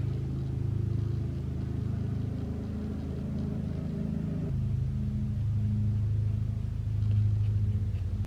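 A low, steady, engine-like rumble, shifting slightly in pitch about four and a half seconds in.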